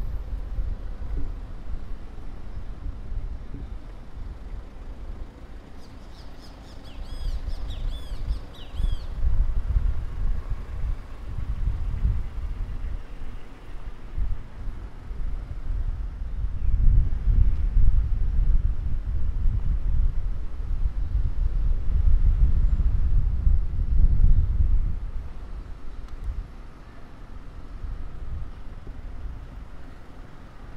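Traffic rumbling along a busy city street, swelling louder for several seconds past the middle. A bird sings a quick run of high, swooping chirps about six to nine seconds in.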